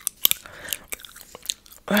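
Gum being chewed close to a microphone: a string of sharp mouth clicks and smacks at an uneven pace.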